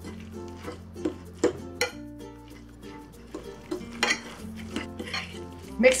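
Metal utensil stirring a thick ground-chicken and cabbage mixture in a ceramic bowl, with irregular clinks and scrapes against the bowl, over soft background music.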